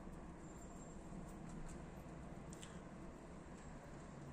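Pigeons pecking seed off a tiled floor: faint, scattered soft ticks over a low, steady background rumble.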